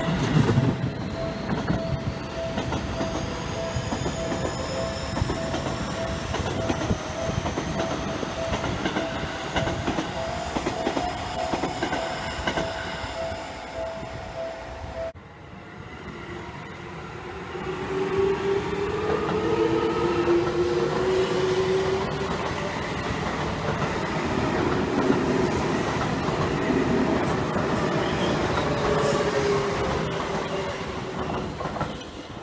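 Seibu 20000 series electric commuter trains running: the traction motor whine rises in pitch as a train moves off, over wheel-on-rail running noise. After a break about halfway, a second passage begins with another rising motor whine and the wheel clatter of a passing train.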